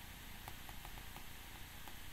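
Faint, light ticks of a stylus tapping and sliding on a tablet's glass screen while handwriting, over a low steady hiss.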